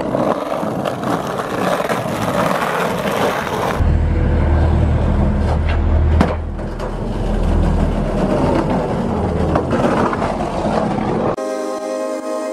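Skateboard wheels rolling over rough asphalt, a gritty rumbling roll that turns deeper and heavier partway through, with one sharp clack of the board about six seconds in. Music comes in near the end.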